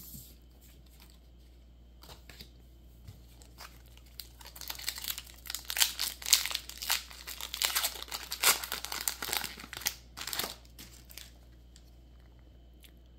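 Foil wrapper of a Pokémon booster pack crinkling and tearing as it is pulled open by hand: a dense run of sharp crackles starting about four seconds in and stopping a second or two before the end.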